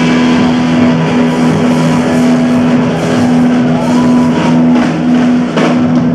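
A punk rock band playing loud and live: electric guitars, bass and a drum kit with crashing cymbals.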